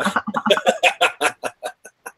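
A man laughing heartily: a quick run of breathy bursts that slows and fades away in the second half.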